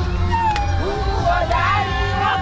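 A group of women singing with high, wavering voices that glide up and down over music.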